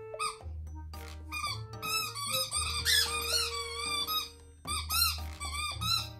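A dog's squeaky toy squeaking over and over in quick wavering runs, a long run in the middle and a shorter one near the end, over background music.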